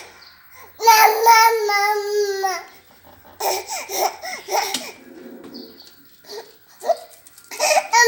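A baby babbling: one long drawn-out vocal sound of about two seconds, then short broken laughing sounds, and another babble starting near the end.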